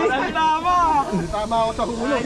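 Men's voices talking, unclear speech.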